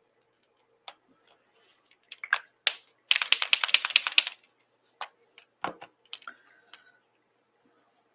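Handling of a paint marker: scattered clicks, then about a second of fast, even rattling clicks, the sound of a shaken marker's mixing ball, followed by more single clicks and a knock as the pen is set down or capped.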